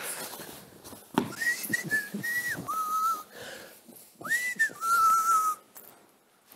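A person whistling a short two-note phrase twice: a high note, then a lower held note. A single sharp knock comes just before the first phrase.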